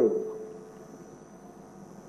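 A man's voice finishing a word and trailing off, then a pause in speech holding only a faint steady hum.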